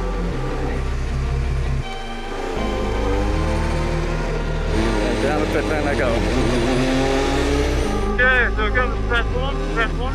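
Mercedes W10 Formula One car's turbocharged V6 hybrid engine running at low revs as the car pulls away from the garage and down the pit lane. The engine note dips briefly about two seconds in, and pitch glides can be heard in the middle.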